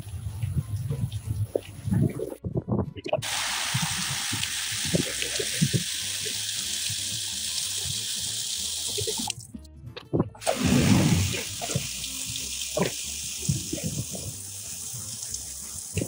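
Garden hose on a flat spray setting spraying water onto plastic storage bins: a steady hiss of spray, broken by two abrupt cuts, about two and a half seconds in and again near ten seconds.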